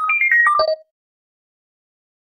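Short electronic chime jingle: a quick run of bell-like notes that steps mostly downward in pitch and ends on a low note in under a second, an edited-in sound effect for the end title.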